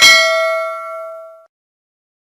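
Notification-bell 'ding' sound effect of a subscribe animation: one bright bell-like strike that rings with several tones and fades out over about a second and a half.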